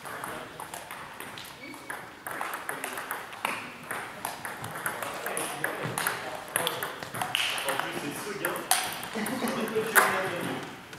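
Table tennis ball clicking against rubber paddles and the table top in an irregular run of sharp knocks as points are served and rallied.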